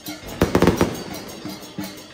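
Dragon-dance percussion band playing a steady beat, broken about half a second in by a burst of loud, quick drum and cymbal strikes that ring on.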